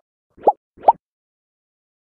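Two short rising 'plop' sound effects, about half a second apart, of the kind an editor adds to a logo transition.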